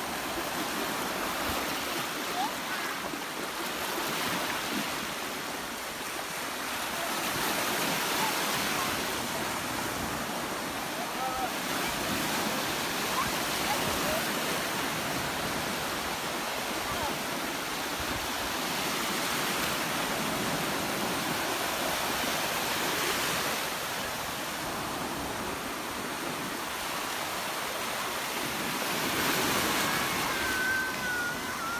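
Sea surf breaking and washing through shallow water at the shoreline, a steady rush that swells louder several times as waves come in.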